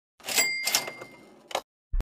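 A sound effect: a mechanical clatter with a single bell ding that rings on and fades over about a second, followed by a couple of clicks and a short low thump at the end.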